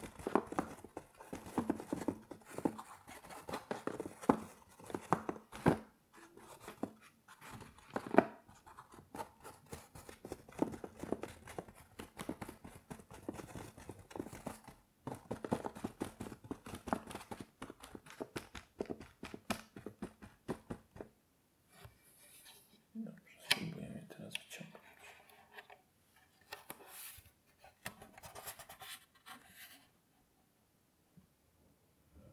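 Small wooden chess pieces being handled close to the microphone: many quick clicks and knocks of wood against wood and soft taps on a felt-lined wooden box. The handling is busy at first and thins out after about two-thirds of the way through.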